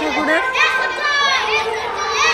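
Several children's high-pitched voices chattering and calling out over one another.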